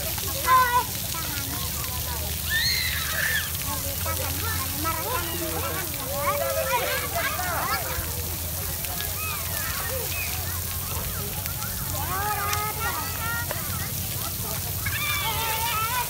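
Steady spray of a ground-level splash fountain's water jets falling on wet paving. Many children's voices shout and chatter over it throughout.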